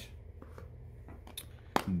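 A few faint, sharp clicks of small metal sewing-machine parts being handled at the machine bed, the last and loudest near the end, over a low steady hum.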